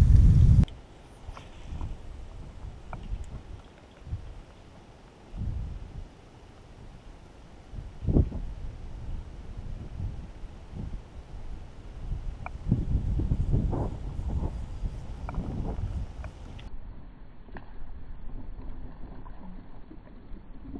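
Wind buffeting the microphone in a low rumble that comes and goes in gusts, with one sharp knock about eight seconds in.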